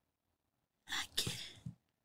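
A faint, short, cough-like burst of breath from a person about a second in, followed by a small click.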